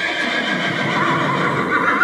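Horse whinnying in one long, drawn-out call that tails off near the end.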